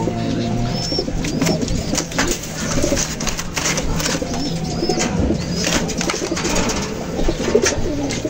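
Domestic racing pigeons cooing in a loft, with scattered clicks and rustling and a few short high chirps.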